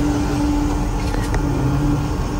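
Steady low rumble inside a moving cable car cabin, under soft background music holding long, slowly changing notes. A few faint light ticks come about a second in.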